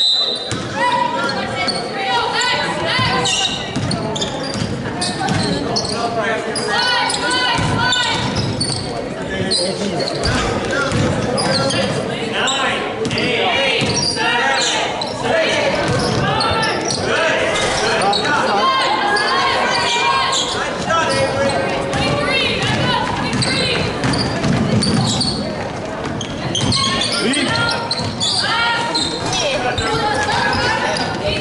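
Basketball game in a gymnasium: a ball dribbling and bouncing on the hardwood court under many voices calling and shouting, all echoing in the large hall.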